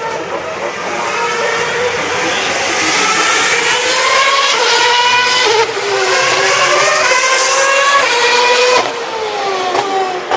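2011 Formula One cars' 2.4-litre V8 engines at full throttle on the track. Their pitch climbs through each gear and drops sharply at every upshift, getting louder toward the middle and falling away sharply near the end.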